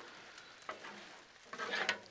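Two metal spatulas scraping and turning pasta and ground beef on a Blackstone steel flat-top griddle, with the food sizzling quietly. A few louder scrapes come in the second half.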